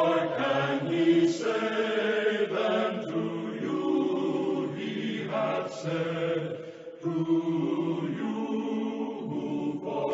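Voices singing together in long held notes, a choral musical passage. There is a brief break about seven seconds in.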